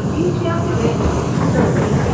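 A moving passenger train heard from inside the carriage: the steady running rumble of the train on the rails.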